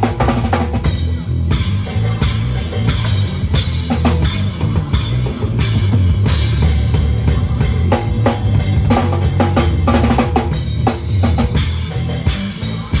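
Acoustic drum kit played with sticks, snare, bass drum and cymbals in a continuous beat, along with the recorded music of the song being covered.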